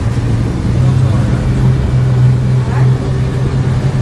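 Motorboat engine running steadily at speed, a constant low hum, with water rushing and splashing along the hull.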